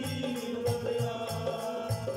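Live devotional folk music: a dholak beating a steady rhythm with a jingling rattle on the beat, under a held melody from harmonium and reed instrument.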